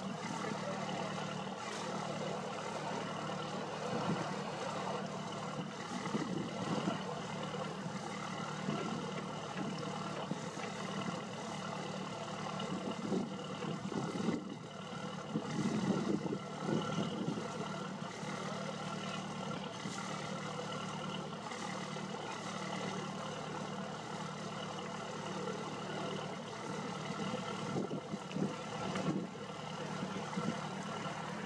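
A river cruiser's inboard engine running steadily at low speed: a constant low hum.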